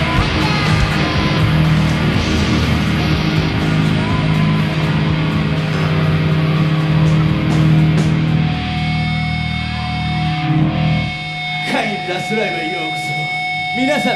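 Visual kei rock band playing live, with distorted electric guitars, bass and drums. About ten and a half seconds in, the drums and bass stop, leaving held guitar notes ringing, with shouted voices over them.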